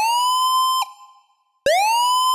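Phasemaker FM synthesizer's dub siren patch, played twice from the keyboard: each note swoops up in pitch over a fraction of a second, then holds a steady, bright, buzzy tone. The upward swoop comes from the pitch envelope's attack being turned up to maximum. The first note cuts off just before one second in, leaving a brief fading tail, and the second starts about a second and a half in.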